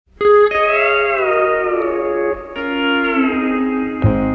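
Instrumental intro of a country song, led by a steel guitar playing held chords that slide down in pitch. The music starts about a quarter second in, and a new chord comes in about two and a half seconds in.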